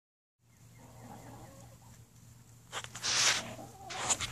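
Chickens clucking softly and faintly inside a chicken house, followed about three seconds in by a louder burst of rustling noise.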